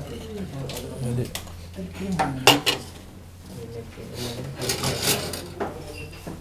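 Cutlery and plates clinking a few times, with quiet voices underneath; the sharpest clink comes about two and a half seconds in.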